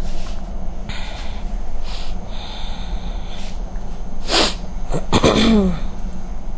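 A woman's sudden breath sounds: a sharp noisy breath about four seconds in, then an explosive burst with a voice falling in pitch, like a sneeze or a heavy sigh. A low steady hum sits under it.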